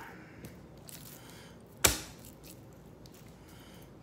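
A single sharp tap of a kitchen knife against a wooden end-grain cutting board about two seconds in, among faint handling sounds of raw steaks on the board.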